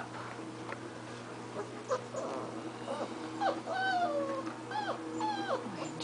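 Six-week-old puppies whimpering: a series of short, high whines from about two seconds in, several sliding down in pitch.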